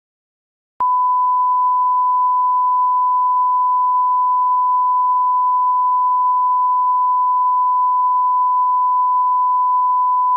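Steady 1 kHz line-up reference tone of the kind that accompanies colour bars at the end of a broadcast tape, a single unbroken pure beep that starts abruptly about a second in.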